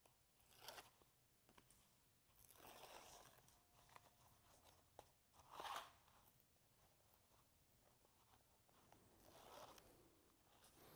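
Faint crackling and rustling of the paper liner being peeled off double-sided basting tape along the edges of a fabric pocket, in a few short bursts separated by near silence.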